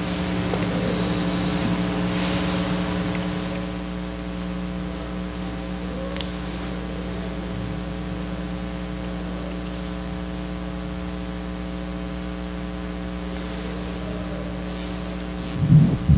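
Steady electrical mains hum and buzz in the sound system, with faint hiss and a few light clicks. Just before the end comes a sharp thump of the microphone being handled.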